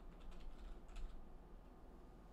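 Faint typing on a computer keyboard: a quick run of key clicks in the first second, then it stops.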